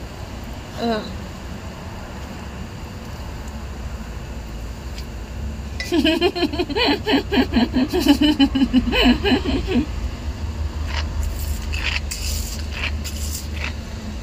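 A woman laughing in quick bursts for about four seconds through a mouthful of enoki mushrooms. Near the end come a few short sucking sounds as she slurps the mushroom strands into her mouth. A low steady hum runs underneath.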